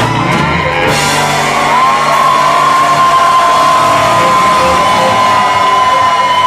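Live ska band closing a song: after the drums drop back, one high note is held steadily for about five seconds over the band's final chord.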